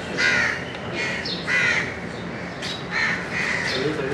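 A bird's harsh calls, three of them about a second and a half apart.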